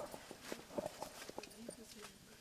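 Faint voices in the background with scattered light clicks, at a low level.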